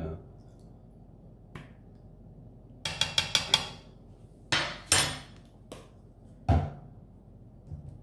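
Kitchen utensil clatter: a quick run of light clicks about three seconds in, then a few sharper knocks, the heaviest near the end, as a metal spoon and a plastic lemon-juice bottle are handled over a plastic mini chopper bowl and set down on a plastic cutting board.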